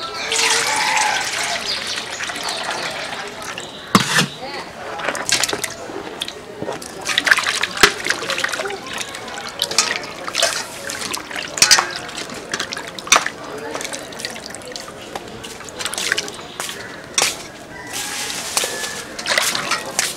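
Water poured into a stainless steel bowl, then splashing and sharp knocks as pieces of fish are washed by hand in the water and knock against the steel bowl.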